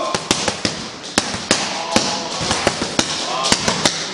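Boxing gloves smacking into focus mitts in quick combinations: a dozen or more sharp hits, bunched in runs of two to four with short gaps between.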